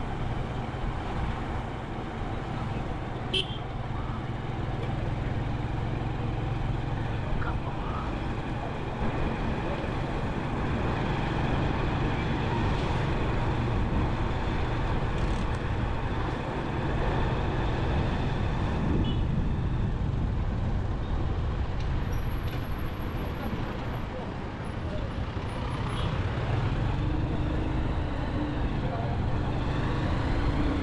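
Town street traffic noise: a steady low rumble of vehicle engines and tyres on the road.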